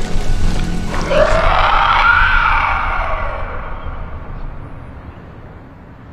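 Film score music with a long drawn-out growl-like sound effect. It swells about a second in, bends down in pitch and fades away over the next few seconds as the music dies down.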